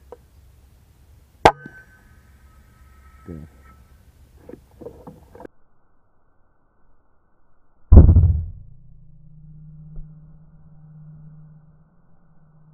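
A sharp click with a brief ringing tone about a second and a half in. Then, about eight seconds in, a single loud shot from a .25-caliber FX Impact M3 PCP air rifle, a heavy thump that dies away into a low steady hum.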